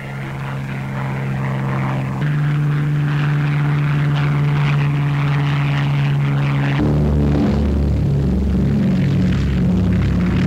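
Propeller aircraft engines roaring at takeoff power, a loud steady drone, with held low musical tones that change about two seconds in and again near seven seconds, when a deeper rumble joins in.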